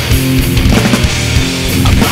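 Live sludge metal band playing: heavily distorted electric guitars holding low riff notes over bass and drums, with cymbal wash.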